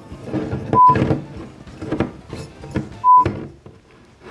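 Muttered voices while a glass bottle's screw cap is struggled with, cut twice by short censor bleeps about two seconds apart, the usual cover for swearing.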